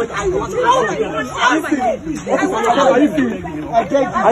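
Several people's voices talking at once, an unclear stretch of overlapping speech and chatter.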